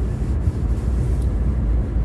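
Steady low road and engine rumble inside the cabin of an Infiniti Q50 Red Sport driving along a snow-covered highway.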